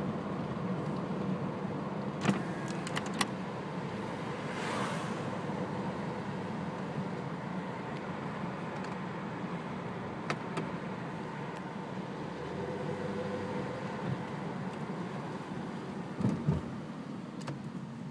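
Stock 2003 Toyota Camry's engine and road noise heard inside the cabin, a steady hum while driving with no clear rev. A few sharp clicks come about two to three seconds in, and a couple of knocks come near the end.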